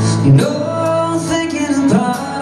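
Live band music: a male singer holding long, wavering notes over acoustic guitar and band in a slow ballad.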